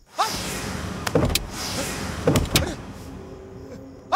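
Film sound effects of a car's interior acting up: a whirring hiss broken by several sharp knocks and thuds. A low held music note comes in near the end.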